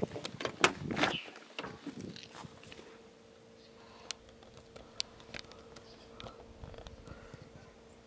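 Rear door of a box Chevy opened by its chrome handle: a few sharp latch clicks and knocks at the start. After that come a few faint, scattered handling clicks over a low, steady hum.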